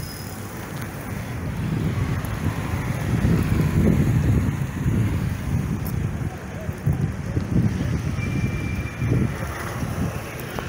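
Wind buffeting the microphone: a low, rough rumble that swells in gusts, strongest about three to five seconds in.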